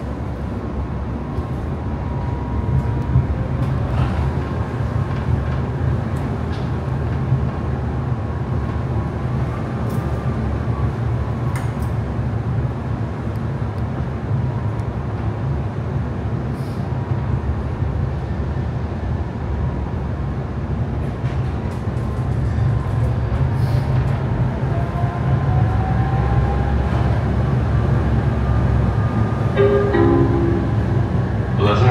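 Interior ride noise of a Tatra T3 tram under way: a continuous low rumble of the running gear on the rails with a steady high tone above it. In the later part a whine rises in pitch and the noise grows louder as the tram picks up speed.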